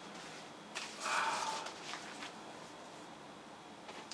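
A vinyl LP being slid out of its album sleeve: a soft paper rustle about a second in, with a few light handling clicks.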